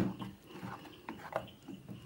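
Wet squishing and slapping of a hand mixing health-mix flour and water into dosa batter in a stainless steel bowl, in irregular short strokes, the sharpest right at the start.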